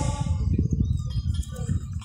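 Wind buffeting the microphone outdoors: an uneven low rumble that comes and goes, with the tail of an amplified male voice fading out at the start.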